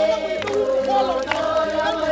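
Music with voices singing together like a choir, one held note sounding under gliding sung lines.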